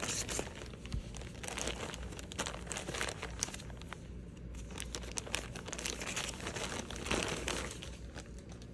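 Plastic poly mailer bag crinkling and rustling as it is cut open with scissors and handled, then the clear plastic bag around a doll wig, with many small crackles throughout.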